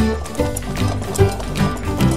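Background music: a bouncy melody of short notes stepping up and down over a steady bass and a regular beat.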